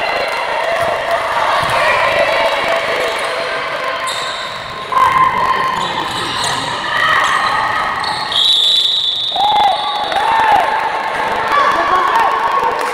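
A handball bouncing on the hardwood court, with players' shouts and calls echoing in a large, mostly empty sports hall.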